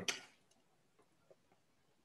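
The end of a man's spoken sentence trailing off, then near silence broken by a couple of faint, short clicks.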